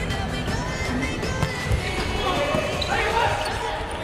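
Volleyball being struck during a rally: sharp thuds of the ball on hands and court, the clearest about a second and a half in, over arena background music.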